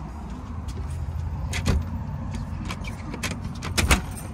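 Clicks and knocks from a front door's lever handle and latch as the door is opened, a single click about a second and a half in and a louder cluster near the end, over a low steady rumble.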